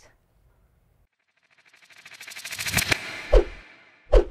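Outro sound effect: after a second of near silence, a rising whoosh with a fast fluttering texture swells for about a second and a half, then a sharp, deep hit lands near the end.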